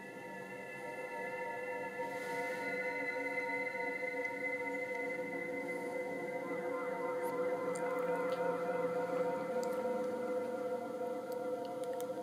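Music from an Amazon Tap portable speaker: the next track of a shuffled playlist fading in with long held chords that swell slowly louder.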